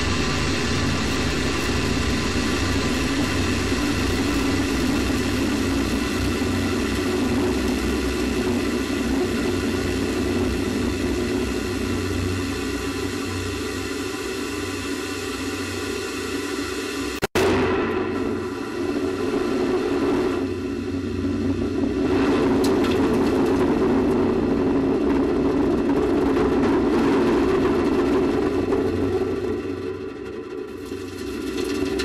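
Space Shuttle solid rocket booster recorded on board: the booster running with a steady loud noise that slowly lessens as it climbs into thinner air. A little past halfway, a sudden sharp small explosion as the explosive bolts fire and the booster separates from the shuttle. After it, the noise of the booster falling back through the atmosphere.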